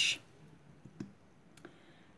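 A few small clicks from a mascara tube being picked up and handled, the sharpest about a second in.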